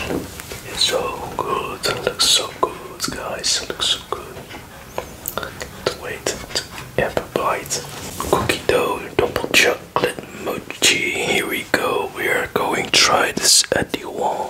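Close-miked whispering, broken often by short sharp clicks.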